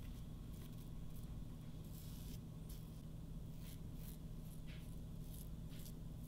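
Double-edge safety razor scraping through about a week's stubble in short strokes, a faint rasp a few times a second, over a low steady hum.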